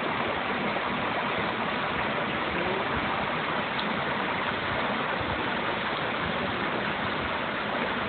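Waterfall pouring down a rock face into a pool: a steady rush of falling water.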